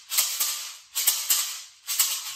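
A pair of painted rawhide maracas shaken slowly: three hissing rattles of the beads inside, about a second apart, each made of a few quick accents that fade away.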